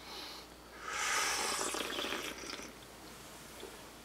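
Tea being slurped from a small cup: a soft sip at the start, then a louder, airy slurp lasting about a second.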